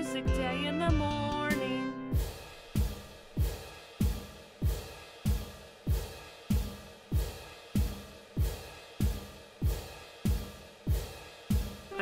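A sung children's song with its backing ends about two seconds in. Then a pair of cymbals crashes on a steady beat, about one and a half strokes a second, each crash ringing briefly with a low thump under it.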